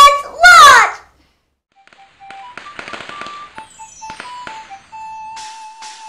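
A boy's loud, excited voice ends about a second in. After a short gap a Chinese New Year children's song intro starts: short melodic notes over a crackling firecracker-like sound effect, then a held note with a regular beat.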